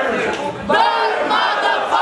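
Crowd in a tent shouting together, several voices raised at once, loudest from a little after the start until near the end; no music playing.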